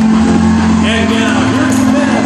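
Loud music playing through an arena sound system, holding a steady low note over a bass drone. Many voices shout and call out over it from about a second in.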